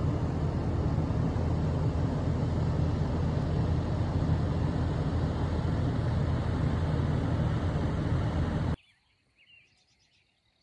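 Steady low rumbling outdoor noise that cuts off abruptly near the end, leaving a few faint bird chirps.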